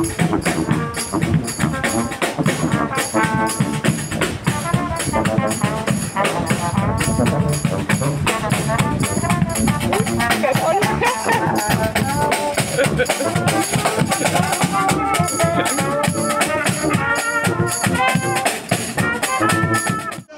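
Small marching dixieland brass band playing swing. A sousaphone plays the bass line, snare and bass drum keep a steady beat, and brass carries the melody.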